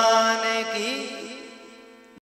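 A male voice holding a final chanted devotional note over a sustained instrumental drone, the whole fading out steadily toward the end.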